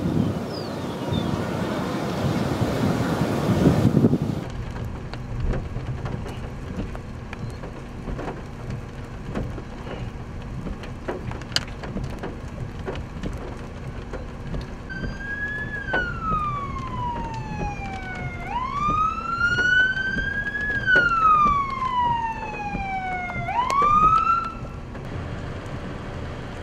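A rushing, wind-like noise for the first four seconds cuts off abruptly. After that comes a quieter outdoor background, and then a siren wails in the second half, its pitch sliding slowly down and back up twice.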